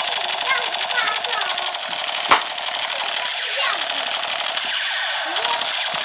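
Battery-powered light-up toy gun with a spinning disc, its electronic rapid-fire sound effect running as a steady fast rattle. A single sharp click sounds a little over two seconds in.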